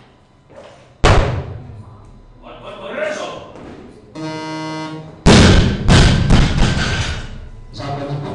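A loaded barbell with bumper plates is dropped onto the lifting platform after a snatch: a loud crash followed by several bounces. Just before it comes a buzz of about a second, the referees' down signal. About a second in there is a sharp thud as the lifter's feet strike the platform in the catch.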